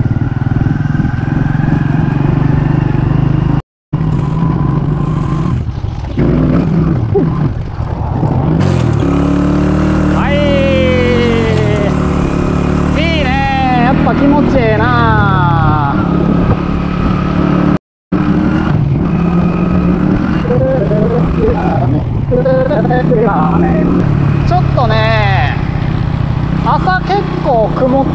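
Small motorcycle's engine running while riding, heard from the rider's seat, its pitch climbing several times as it speeds up. The sound drops out completely for a split moment twice.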